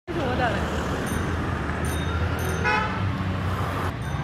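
Road traffic with a steady low rumble, and a short vehicle horn toot about two and a half seconds in.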